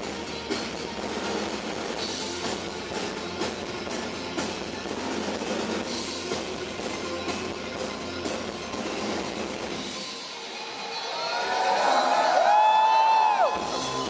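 Live darkwave/electro band music heard from within the crowd, with a steady drum beat. About ten seconds in, the beat and bass drop out, and a held, bending tone swells to the loudest point. It cuts off suddenly just before the beat comes back.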